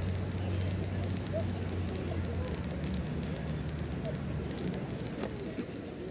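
Outdoor crowd murmur over a steady low rumble that weakens about halfway through, with a single faint click near the end.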